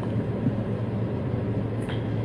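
A steady low hum with an even hiss above it.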